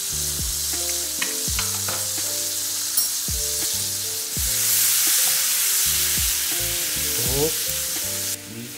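Butter and minced garlic sizzling in a frying pan. The sizzle grows louder about halfway through as a silicone spatula stirs it. Background music with a steady beat plays underneath.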